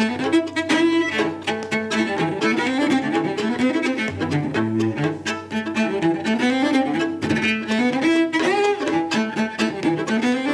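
Live bowed string music: a cello, with a fiddle, playing a tune in quick-changing notes with a few slides between pitches.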